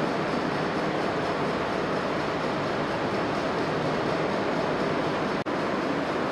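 Steady, even rushing noise with no distinct events, briefly cut off about five and a half seconds in.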